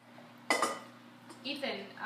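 Metal utensil clattering against pots and metal bowls at a kitchen counter, with one sharp ringing clink about half a second in and a few lighter knocks after it.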